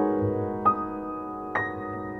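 Background music: slow, soft solo piano, with single notes struck about a second apart, each ringing out and fading.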